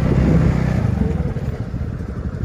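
Motorcycle engines running slowly at a standstill, a steady low rumble that swells slightly in the first second.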